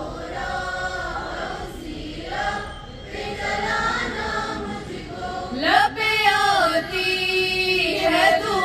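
A small group of schoolgirls singing together in unison, a slow melody with long held notes and a rising swoop near the end.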